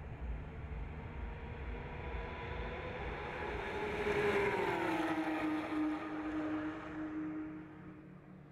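Porsche 911 race cars' flat-six engines at racing speed, growing louder and passing close about halfway through, their pitch dropping as they go by, then holding a lower note and fading near the end.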